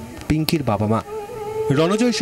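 A voice speaking briefly, then a steady buzzing tone held for about a second.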